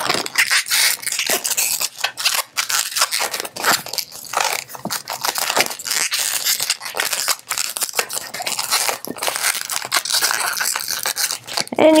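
Inflated latex 160 modelling balloon rubbing and creaking under the fingers as small pinch twists are twisted into it, a run of irregular scrapes.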